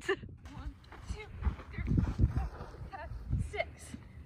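Faint scattered voices with soft, irregular low thuds of feet running on sand footing.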